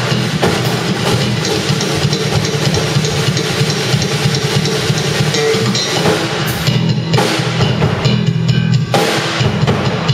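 Live improvised drum and electric bass duo: a drum kit played busily with bass drum, snare and cymbals over a running bass guitar line. The cymbals ease off for a couple of seconds toward the end while the bass carries on.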